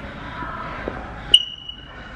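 A sharp click about halfway through, followed at once by a steady high-pitched beep lasting under a second, over steady background noise.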